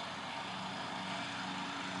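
A steady distant engine hum over a faint, even outdoor background noise.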